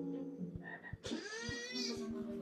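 Cartoon soundtrack: soft background music with sustained low notes, and from about a second in a rising, croaking animal call sounds over it.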